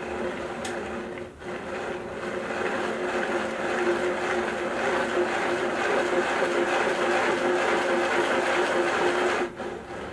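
A 3D-printed plastic harmonic drive gearbox is cranked fast by hand and runs with a steady whirring hum. There is a brief dip about a second and a half in, the sound gets a little louder after that, and it stops sharply just before the end.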